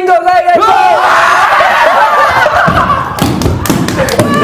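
Several young men shouting and screaming together in excitement, one yelling '진짜!'. Heavy thumps come near the end as someone jumps and stamps on the floor.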